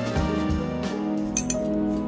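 Background music plays throughout. About a second and a half in, two quick clinks sound against the glass mixing bowl.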